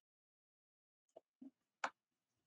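Near silence, then three short faint clicks a little over a second in, the last the loudest: a computer mouse being clicked.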